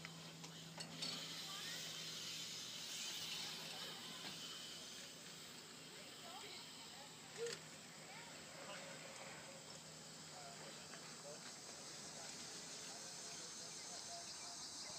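Faint outdoor ambience of insects chirping steadily, with one short, louder call about halfway through.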